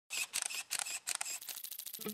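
Camera-shutter clicks used as a sound effect, in short quick clusters that tighten into a faster run of clicks in the second half.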